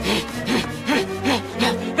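A cartoon Gallimimus character panting hard, about two and a half quick voiced breaths a second, over background music with a steady low bass note.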